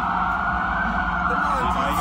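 Emergency vehicle siren wailing over city street noise, its pitch rising slowly for most of a second and then falling back once.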